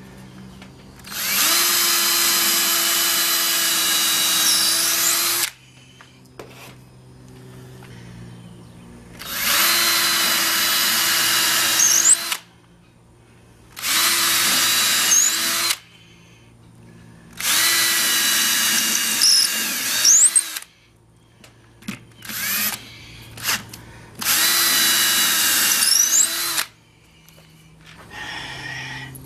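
Cordless drill driving two-inch drywall screws into a wooden subwoofer box panel, in about five runs of two to four seconds each with short pauses between, plus two brief bursts near the end.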